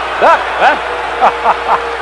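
A man's voice laughing in a few short, rising-and-falling chuckles over a TV broadcast.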